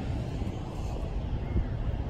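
Steady low background rumble with no single clear source.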